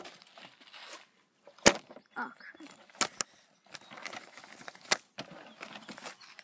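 Faint rustling broken by a few sharp knocks, the loudest about a second and a half in, as grass brushes and bumps a moving camera.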